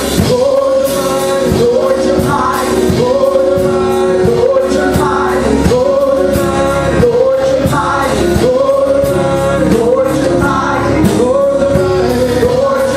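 Gospel praise and worship singing: a small group of women's voices with a man's voice, in long held, sliding phrases, backed by electric keyboard over a steady beat.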